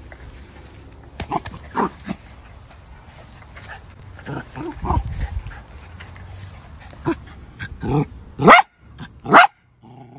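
Dachshund barking twice near the end, two loud barks about a second apart. Before that come quieter, scattered short dog sounds as the dog noses a ball around.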